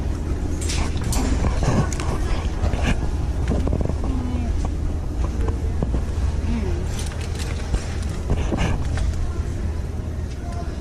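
Store ambience: a steady low rumble with faint, indistinct voices and scattered light clicks and knocks.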